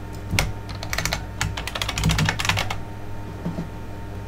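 Typing on a computer keyboard: a quick run of keystrokes lasting about two seconds, then a few more near the end, over a steady low hum.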